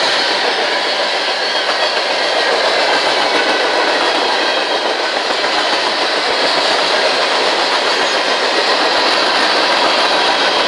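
Freight cars of a CSX empty trash train rolling steadily past close by: loud, continuous wheel-on-rail noise and car rattle with no letup.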